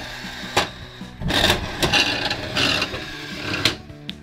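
Toy slot machine's lever pulled, with a click about half a second in, then its reels spinning with a mechanical whirring rattle for about two and a half seconds, broken by sharp clicks and ending on a final click as the reels stop.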